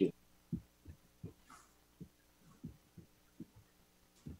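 A series of soft, dull thumps at uneven intervals, roughly two a second, with a faint brief rustle about one and a half seconds in.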